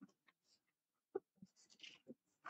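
Near silence broken by faint rustling of papers and a few small knocks and clicks, the sharpest about a second in, as documents are handled and signed at a table.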